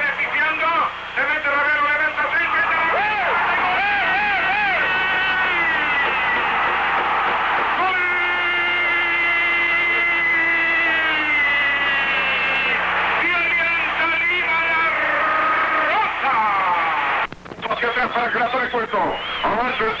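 Old radio football broadcast, its sound cut off above the middle range: a Spanish-language commentator calls the play at speed, with a long drawn-out held call in the middle. A steady low hum runs underneath.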